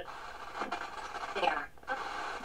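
FM radio of a Crosley CT200 cassette player being tuned on its small built-in speaker: hiss with faint snatches of a broadcast voice as the lost station is searched for.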